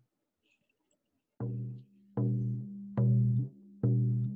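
A drum beaten in a slow, steady beat, four strokes about 0.8 s apart starting about a second and a half in. Each stroke has a low ringing tone. These are test strokes for a sound check with the drum moved closer to the microphone.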